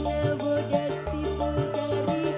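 Live dangdut koplo band playing an instrumental passage: a melody moving in short held notes over a bass line and a steady drum beat, with no singing.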